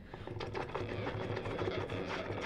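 Baritone saxophone playing a low note in rapid even pulses, mixed with a scatter of short clicks, in an extended-technique improvisation.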